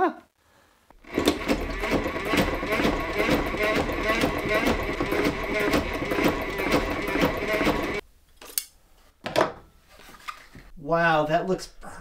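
Sailrite walking-foot sewing machine worked by its hand wheel, stitching a zigzag through twelve layers of heavy sail cloth: a rapid, rhythmic clatter of needle strokes for about seven seconds that stops abruptly, followed by a few clicks.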